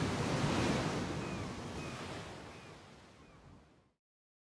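Sea waves washing in a steady noise that fades out over the last two seconds, with a few faint short chirps over it.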